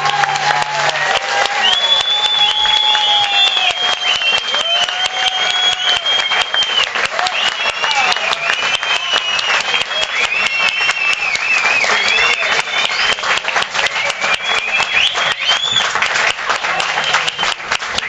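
Live audience applauding steadily after a song ends, with cheering voices calling out over the clapping.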